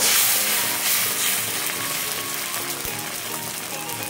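Thin neer dosa batter sizzling on a hot cast-iron tawa just after being poured, the sizzle fading steadily as the batter sets. Faint background music plays underneath.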